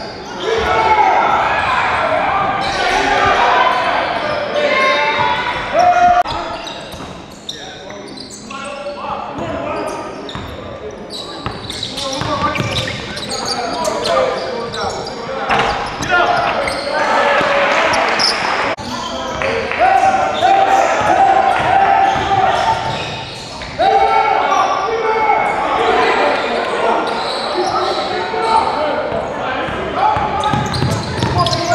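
Game sound in an echoing gymnasium: indistinct voices of players and spectators, with a basketball bouncing on the court.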